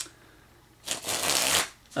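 A deck of plastic narrow-index bridge-size playing cards riffled, a rapid flutter of cards lasting about a second, starting a little under a second in. A short click comes first.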